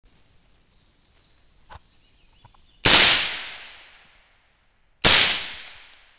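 Two shots from a suppressed .308 rifle, about two seconds apart, each a sharp report followed by an echo that dies away over about a second. A few faint clicks come before the first shot.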